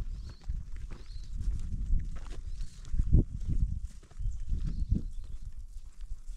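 Uneven footsteps on loose stones and rocky ground, with a low rumbling that swells in bursts, loudest about halfway through.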